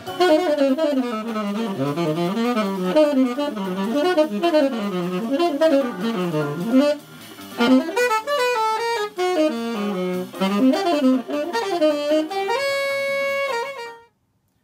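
Solo tenor saxophone playing fast, sloppy runs that climb and fall, with a short break about halfway. It ends on one long held note.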